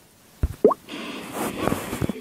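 Cartoon sound effects: a short thump and a quick rising bloop, then about a second of crashing noise as SpongeBob breaks up through the wooden floor.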